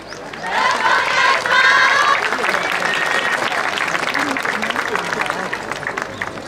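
Audience clapping, with voices calling out over it in the first couple of seconds; the clapping swells about half a second in and slowly tapers off toward the end.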